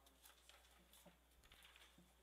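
Near silence: room tone with a low steady hum and faint, scattered light clicks and rustles of papers being handled.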